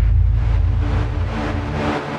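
Drumless breakdown in a minimal techno mix: a deep, sustained sub-bass drone, with a few held synth notes coming in about halfway through.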